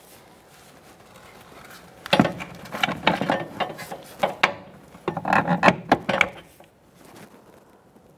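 A new rear shock absorber being worked up into the wheel well, knocking and rubbing against the wheel-well liner and body. There are two spells of irregular clatter, the first about two seconds in and the second near the middle.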